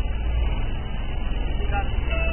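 Car engine and road noise heard from inside the cabin, a steady low rumble picked up by a muffled dashcam microphone as the car moves slowly.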